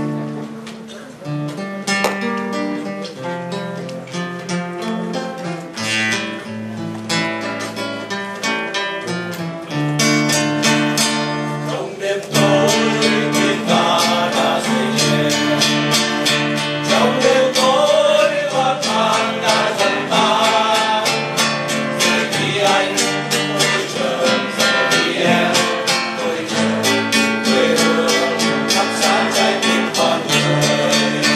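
A Vietnamese du ca song performed live: acoustic guitar strummed while a small group of men sing, the music growing louder and fuller about ten seconds in.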